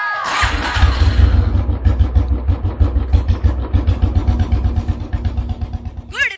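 Motorcycle engine running: a loud, steady, rapid low beat that starts about half a second in, after a brief rushing noise.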